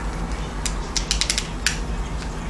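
Small plastic zip-lock bags of glitter crinkling as they are handled, a quick run of sharp crackles from just over half a second in to near the end, over a low steady hum.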